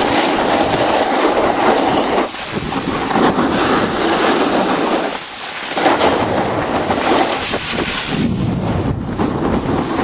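Skis scraping and hissing over packed snow as the filmer skis downhill, a steady loud rushing noise that eases briefly about two and five seconds in.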